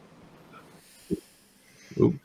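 Faint room noise over a call microphone, with two short, low puffs of breath or a snort into the microphone, one about a second in and a louder one at the end.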